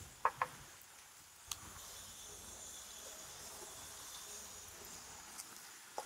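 Faint outdoor ambience with a steady high insect chirring. Two brief short sounds come near the start and a single small click about a second and a half in.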